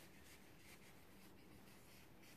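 Faint, soft rubbing of a charcoal-filled stocking pounce dabbed and smeared across drawing paper.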